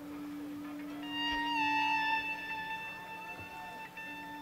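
A live band opening a slow song with long held notes. A low note sounds throughout, and about a second in a higher note joins it, slides down slightly, then holds steady.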